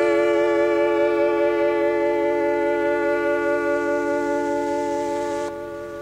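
Final chord of a song on a Yamaha PS-6100 electronic home keyboard, held with a slight vibrato and slowly fading before it cuts off at the end.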